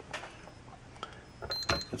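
A metal pistol slide clicking and knocking as it is handled and set down on a digital scale, with a brief high electronic beep among the clicks near the end.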